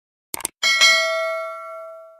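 Subscribe-button sound effect: a quick double mouse click, then a single bell ding that rings on and fades away over about a second and a half.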